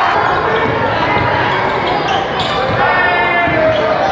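A basketball bouncing on a gym floor amid a crowd's voices, with a few sharp knocks and short squeals during play.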